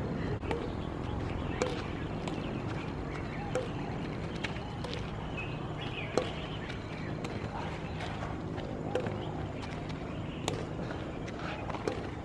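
Badminton rackets striking a shuttlecock back and forth in a rally: about ten sharp strikes, roughly a second apart.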